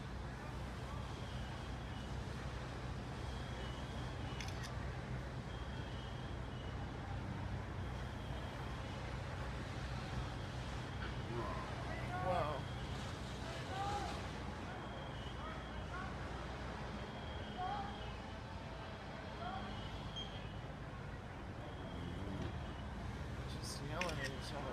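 Steady low rumble of fire engines running at the fire, with a faint high-pitched beep repeating every second or so. Distant voices waver in and out in the middle stretch, with a brief louder moment about twelve seconds in.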